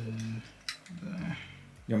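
Small plastic and metal clicks as the strap and hook of a handheld luggage scale are clipped onto a suitcase handle, with one sharp click about two-thirds of a second in. A short hummed vocal sound comes at the start, and speech begins near the end.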